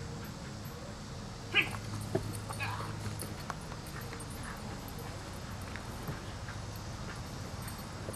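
Border Collie giving one sharp, loud bark about one and a half seconds in, then a few shorter, weaker yips during protection sleeve work.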